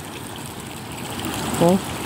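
Floodwater running steadily across a flooded vegetable plot, a continuous even wash of water noise; the flood is still strong after the rain has stopped.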